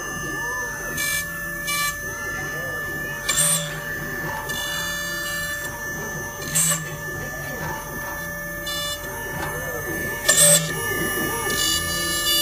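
High-speed spindle of a CW-F01S CNC PCB depaneling router running with a steady high whine as it routes out the boards of a PCB panel, with several short harsh bursts along the way. Voices murmur in the background.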